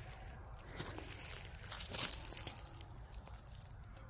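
A few soft footsteps crunching on dry leaf litter and pine straw, the firmest step about halfway through, over a faint low outdoor background.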